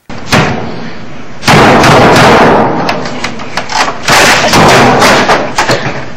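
Loud, repeated bangs and crashes of office computer equipment being smashed, in two heavier flurries, the second starting about four seconds in.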